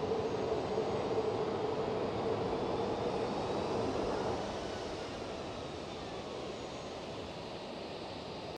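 Jet aircraft engine running steadily with a humming tone, growing somewhat quieter about four seconds in.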